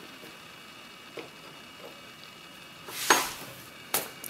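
Small metal mailbox lock being handled as its cover is taken off: a faint click early, a short loud scraping rustle about three seconds in, and a sharp click just before the end, over a low steady hiss.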